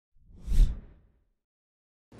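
A single whoosh sound effect with a deep low boom underneath, swelling to a peak about half a second in and dying away within a second: a news intro logo sting.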